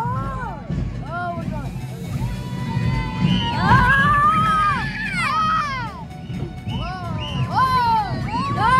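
Children screaming and whooping on a moving roller coaster, a string of rising-and-falling cries that is loudest about halfway through, over a steady low rumble.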